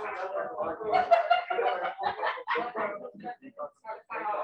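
Several voices reading aloud at once, overlapping: debate students reading their evidence in a drill that puts the word 'taco' between every word.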